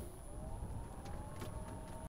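Melex electric cart's drive motor giving a faint whine that rises in pitch as the cart pulls away, over a low rumble.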